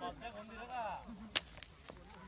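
A single sharp crack, about one and a half seconds in, of a blow struck with a whip or stick in a whip-and-stick play-fight, among shouting voices.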